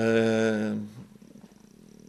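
A man's drawn-out hesitation sound, a single steady held 'eee' at one pitch lasting about a second. It is followed by a pause with only faint room noise.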